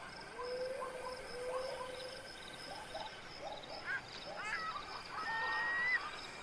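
Night-time wildlife ambience: insects trilling in steady pulses high up, with many short animal calls that slide in pitch, and a longer rising whistled call near the end.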